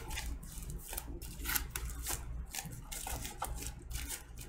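Clear plastic shrink-wrap crinkling and rustling in irregular bursts as it is peeled by hand off a vinyl LP sleeve.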